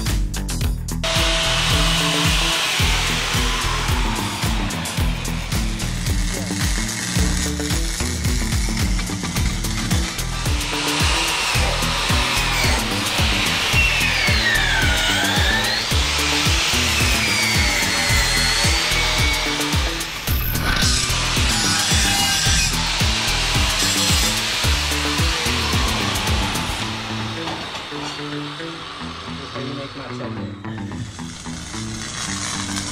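Background music with a steady beat over shop noise from a handheld angle grinder working a steel go-kart axle. Past the middle, the grinder's whine dips in pitch and recovers a few times as it is pressed into the metal.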